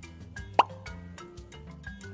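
Light background music with short mallet-like notes, and one loud, short 'plop' sound effect about half a second in, marking a wooden puzzle piece being set into place.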